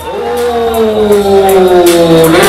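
A man's long drawn-out shout, one held note sliding slowly down in pitch, over the steady bass of a hip-hop beat.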